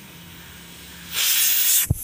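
Pigeon pressure cooker venting steam through its weight valve: a loud hiss starts suddenly about a second in, with a brief break near the end. It is the sign that the cooker has come up to pressure.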